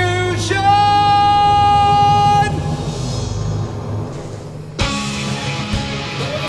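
Live rock-opera music: a singer holds one long high note over the band, and it ends about two and a half seconds in. After a brief lull, the rock band comes back in with a sharp hit near the end, and bass and electric guitar carry on.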